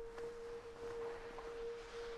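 Faint background score: a single sustained synth tone held steady, like a soft drone under the scene.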